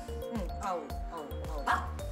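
A Pekingese dog giving a few short yips and barks, the loudest near the end, over background music with a steady beat.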